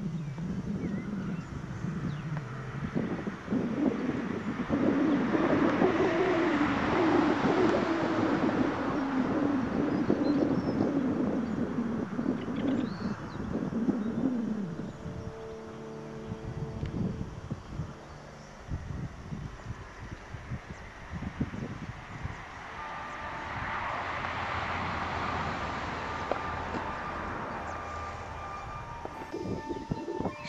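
A motor vehicle passing on a road: engine note and tyre noise build up, hold with a wavering engine tone, and fade away by about halfway. A second, quieter vehicle swells and fades again near the end.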